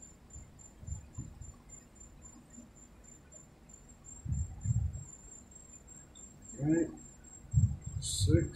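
Soft handling sounds of a coin and hand on a paper scratch-off ticket on a table: a few dull knocks, about a second in, twice around four and a half seconds, and again near the end. A faint steady high-pitched whine sits under it.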